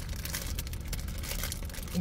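Crinkling of a thin plastic bag being handled in the hands, a run of small irregular crackles, over the steady low rumble of a car cabin.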